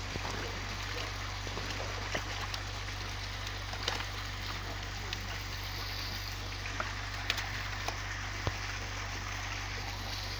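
Water pouring from a pipe into a concrete fish pond, a steady rushing splash, with a few sharp splashes and knocks from live fish being handled in a water-filled plastic basin.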